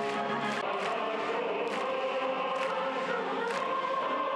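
Choral singing with orchestral accompaniment: held notes under percussion hits that recur about once a second. This is the music of a mass-games performance.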